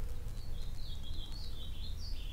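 Steady low background rumble with faint high-pitched chirping that steps up and down in pitch, starting about half a second in.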